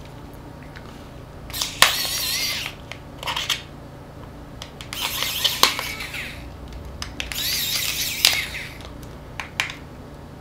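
Thin metal pry tool scraping and prying at the casing of a small Sony MP3 player to open it: three rasping, slightly squeaky scrapes of about a second each, with sharp clicks as the tool catches and slips.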